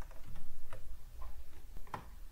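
A few separate keystrokes on a computer keyboard, sharp clicks spaced roughly half a second apart, over a steady low hum.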